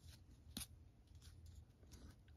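Near silence, with a faint click about half a second in and a few lighter ticks as a Topps baseball card is slid off the front of the stack to the back.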